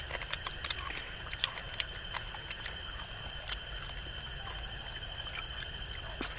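Night insect chorus, likely crickets: a steady, unbroken high-pitched trilling, with scattered light clicks and rustles of handling over it.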